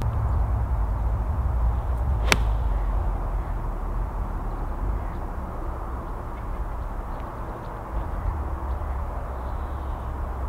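Honma 7-iron striking a golf ball off the tee: a single crisp click about two seconds in. A steady low rumble runs underneath.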